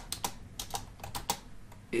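Computer keyboard keys clicking as someone types, a string of about ten separate, unevenly spaced keystrokes.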